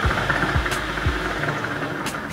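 Water bubbling in a shisha's base as smoke is pulled through it in one long draw on the hose, with a deeper gurgle about twice a second.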